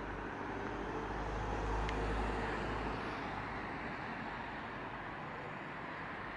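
Light city street traffic: a steady road hum, with a vehicle passing that swells and fades about two seconds in.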